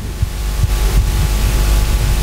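A steady hum with hiss and a low rumble underneath, holding at a constant level without speech.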